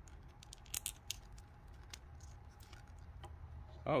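Faint clicks and rubbing of fingers handling a plastic action figure while pressing a paper scroll accessory into its hand, mostly in the first second and a half, over a low steady hum.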